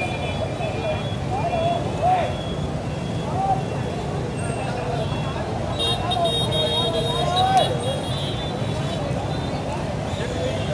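Steady street traffic rumble with indistinct voices of bystanders talking over it.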